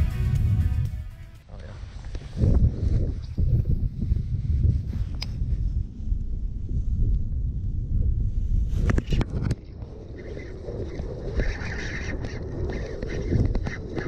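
Background music that cuts off about a second in, then wind buffeting the microphone as a low, gusty rumble out on the water, with a few sharp knocks around the middle.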